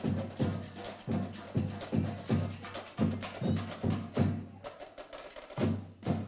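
School drumline playing a steady beat on snare, tenor and bass drums: low drum hits a little under twice a second, with sharp stick and rim clicks between them.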